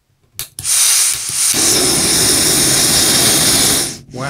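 Remote-canister camping gas stove being lit: a short click, then a loud, steady hiss of butane-propane gas flowing from the burner, and about a second and a half in the flame catches and the burner runs with a rougher low roar under the hiss.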